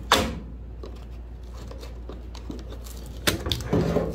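Coarse 80-grit sandpaper being folded over and clamped onto an air file's sanding deck. There is a sharp snap of paper at the very start, a quiet stretch, then a quick cluster of rustles and clicks near the end as the paper is pressed and clamped down.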